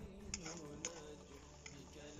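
Metal spoon against the rim and sides of a metal kazan: three faint, sharp clicks over a low background as diced carrots are scraped in and stirred.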